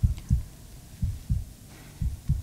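A heartbeat sound effect: a low double thump, lub-dub, repeating about once a second.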